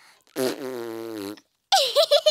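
Peppa Pig's failed first try at whistling: a low, buzzing blow through pursed lips, like a raspberry, lasting about a second and sinking slightly in pitch, with no whistle tone.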